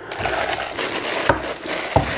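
Thin plastic bag crinkling and rustling steadily as it is handled and wrapped around a plastic spinner, with two light knocks, one a little over a second in and one near the end.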